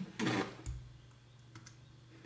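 A man's voice trails off, then a single soft thump with a click and, about a second later, a couple of faint clicks over quiet room tone.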